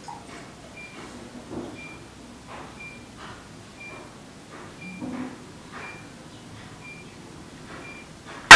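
A faint short electronic beep repeating about once a second, under soft rustling and light handling sounds.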